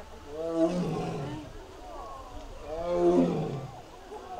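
Siberian tiger giving two roaring calls, each about a second long, the second one louder.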